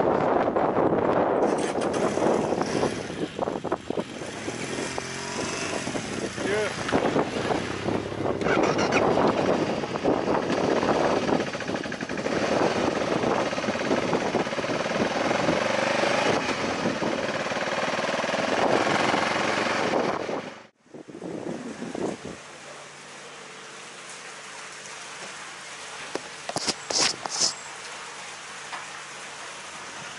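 Motorcycle riding along a loose gravel road: engine and crunching tyre noise under heavy wind noise on the microphone. About two-thirds of the way through it cuts off suddenly to a much quieter steady background, with a few sharp clicks near the end.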